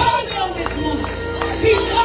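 Church worship music with the congregation's voices singing and calling out over it.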